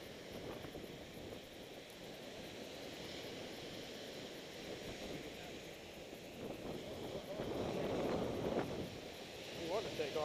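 Surf washing onto a beach, with wind buffeting the microphone, as a steady hiss that swells a little near the end.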